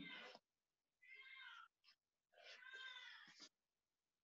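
Two faint, high-pitched drawn-out animal calls, cat-like, the first under a second long and the second about a second long, with a short pause between them.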